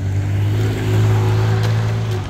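An engine running with a steady low drone that holds one pitch, growing louder about a second in and easing off near the end.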